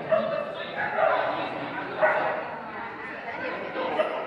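A dog barking about once a second, over background talk.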